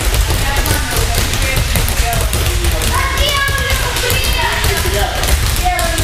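Several balls dribbled at once on padded judo mats: an irregular, overlapping patter of dull bounces.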